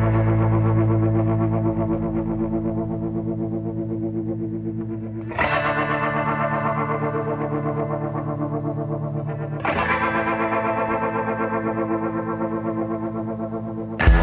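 Instrumental background music: long held chords that slowly fade, with a fresh chord struck about five seconds in and again near ten seconds, and a fast wavering running through the sound.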